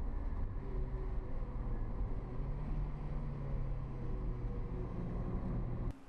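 Engine and road noise heard inside the cabin of a 2005 Mazdaspeed Miata driving on track: a steady low engine hum under a wash of noise, its pitch rising slightly a little over two seconds in and then holding.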